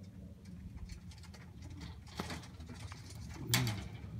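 Domestic pigeons cooing close by, with one low coo loudest about three and a half seconds in, over scattered light clicks and rustles.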